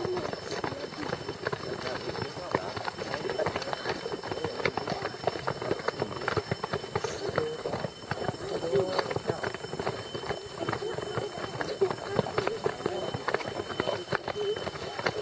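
Quick, irregular footsteps and jostling of a group moving along a paved road, with a steady patter of knocks from the handheld camera, and indistinct voices of the group talking among themselves.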